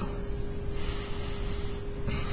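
Room tone: steady hiss and low rumble with a faint constant hum, and no distinct events.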